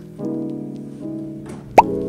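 Soft piano background music with held chords, cut through near the end by a single short, loud rising pop, an editing sound effect.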